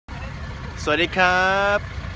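A man's voice says the Thai greeting "sawatdee krap" over a low, steady rumble.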